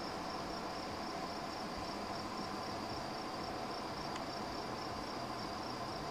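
Crickets chirping in a steady, fast, even pulse, a high-pitched insect chorus.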